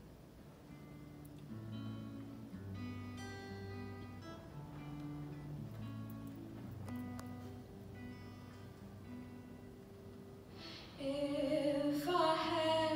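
Acoustic guitar playing a picked intro of separate ringing notes; about a second before the end a female voice comes in singing over it.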